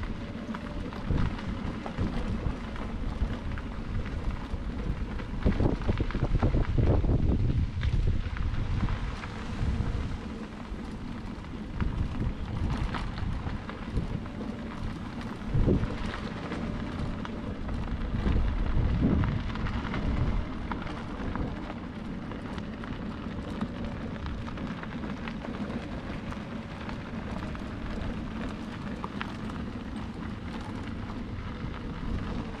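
A scooter rolling over a bumpy crushed-stone path: a rough rumbling rattle from the wheels, swelling louder about a fifth of the way in and again past halfway, with a faint steady hum underneath.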